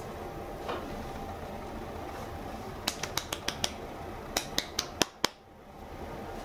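A quick series of sharp clicks: five in about a second, then after a short pause four more, the last two the loudest.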